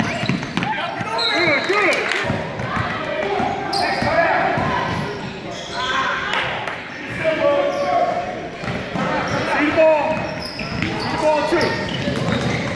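Basketball game in a gym: the ball bouncing on the hardwood, sneakers squeaking in short repeated chirps, and indistinct voices from players and spectators, all echoing in the hall.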